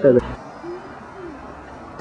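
A voice ends a drawn-out word in the first moment, then only faint, steady café room noise remains, with a couple of faint murmurs in the background.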